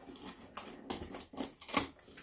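Fingernails picking and scratching at the packing tape on a cardboard box, a string of short sharp clicks and scrapes, the loudest near the end.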